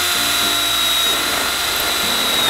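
Cordless drill running steadily with a high, even whine as it bores a rivet hole through the steel external corner flashing and fascia of a carport.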